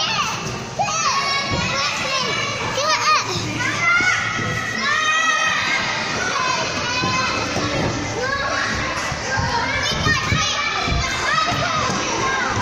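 Many children shouting, shrieking and chattering at play together, a continuous din of overlapping high-pitched voices in an indoor soft play area.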